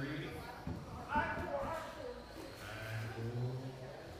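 Indistinct speech echoing in a large hall, with a low steady hum in the second half.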